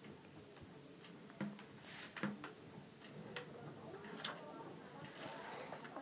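Quiet pause in a voice recording: faint room tone with a few scattered soft clicks and faint breath-like noises.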